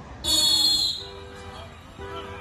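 One sharp, high whistle blast, about a quarter second in and lasting under a second, giving the start signal for a relay race. Faint music follows.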